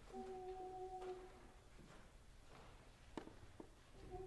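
A single steady note, held for just over a second, sounding the starting pitch for a choir. A sharp click follows about three seconds in, then a second, fainter one.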